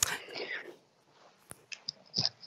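A person's breathy, whispered sound, with no clear voiced words, lasting under a second. It is followed by a sharp click about a second and a half in and a few faint ticks near the end.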